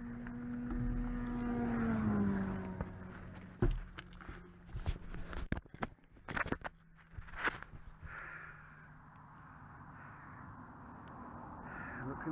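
Knocks, scrapes and rustles of the hang glider's metal frame and harness being handled close by, with a cluster of sharp knocks between about 4 and 8 s in, over a steady engine hum that drops in pitch about 2 s in.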